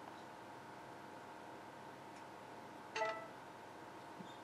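Quiet room tone with a faint steady hum, broken about three seconds in by one brief, short sound.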